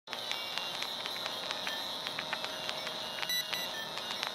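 Old-film crackle sound effect: a steady hiss scattered with irregular clicks and pops.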